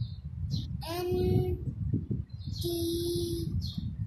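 A young child spelling out a number name letter by letter in a sing-song voice, holding two of the letters as long notes, over a steady low rumble.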